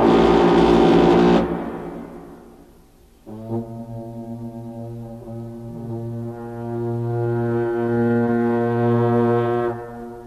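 Tibetan long horns sounding in a Buddhist prayer ritual: first a loud brassy blast that breaks off after about a second and a half and rings away, then, about three seconds in, a long, low, steady horn note that swells and stops just before the end.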